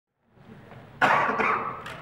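A single loud cough about a second in, from someone in the room, fading over about half a second.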